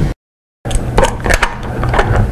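Wooden jig pieces and router parts being handled and set down on a workbench, giving a few short knocks and clatters. The sound cuts out completely for about half a second near the start.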